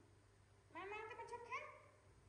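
A baby macaque gives one whining cry lasting about a second, starting a little under a second in, with a sharp upward squeal near its end.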